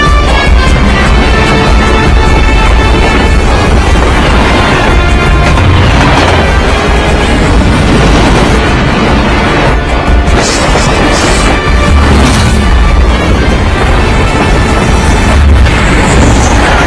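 Loud, dense action-film soundtrack: dramatic music over a heavy low rumble, with sharper hits around ten to twelve seconds in.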